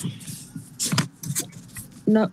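A few short rustling noises near the microphone, the strongest about a second in and another shortly after, over a low steady hum.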